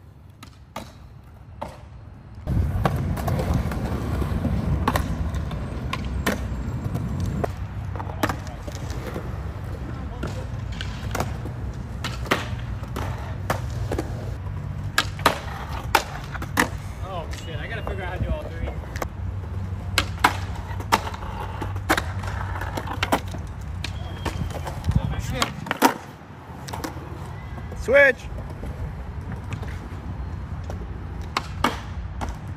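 Skateboard wheels rolling on smooth concrete with a steady low rumble. Many sharp wooden clacks sound over it, from the board popping, hitting and sliding on a concrete ledge, and landing. The rolling starts a couple of seconds in and dips briefly a few seconds before the end.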